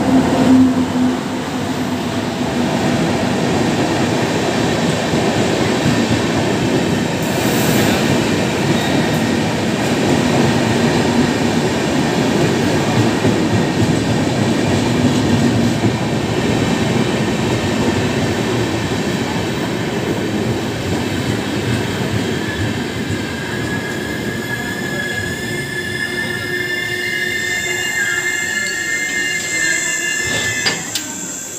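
WAP-7 electric locomotive passes close by, then a long rake of LHB coaches rolls past with a steady loud rumble of wheels on rail. In the last several seconds high-pitched squeals from the wheels and brakes come in as the train slows to a halt at the platform.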